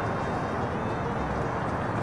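Steady outdoor background noise: an even hiss with a low rumble underneath, and no distinct events.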